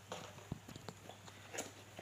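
Faint handling of an empty cardboard box: a few light knocks and taps, the clearest about half a second in.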